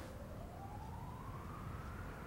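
A faint siren with one slow wail rising steadily in pitch, over low room tone.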